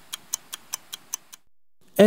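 Stopwatch ticking in an even rhythm of about five ticks a second, then stopping about one and a half seconds in.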